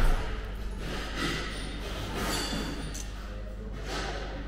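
Indoor café background with a steady low hum and faint murmur from other customers, opened by one sharp thump.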